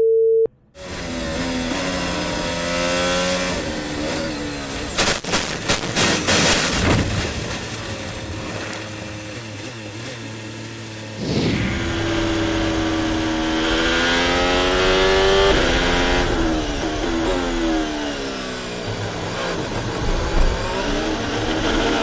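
Onboard sound of a Formula 1 car's turbocharged V6 hybrid engine, its pitch rising and falling again and again as it accelerates, shifts gear and slows for corners. A short radio beep ends just as it begins.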